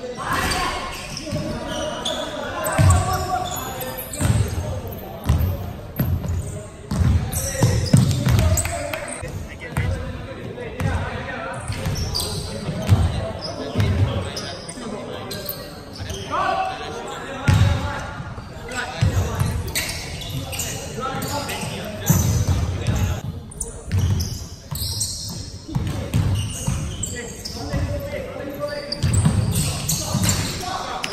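Basketball bouncing on a hardwood gym floor, repeated thuds through the whole stretch, echoing in a large hall.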